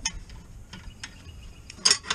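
Light clicks and rattling from the sliding metal door of an older Tuff Trap skunk trap as it is lifted open, with one sharper clack near the end.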